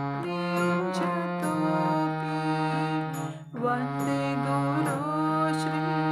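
Hand-pumped harmonium playing a slow devotional melody: sustained reedy notes held and stepping to new pitches every second or so, with a brief break about three and a half seconds in.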